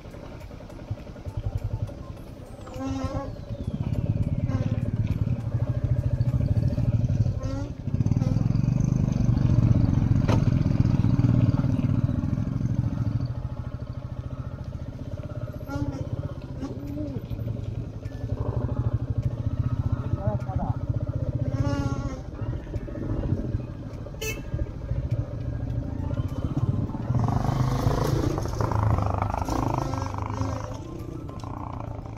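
Motorcycle engine running while riding over a rough gravel road. It makes a steady low rumble that is loudest for several seconds near the start, then settles back.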